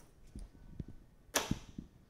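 A single sharp click a little past halfway, with a few faint low thumps around it.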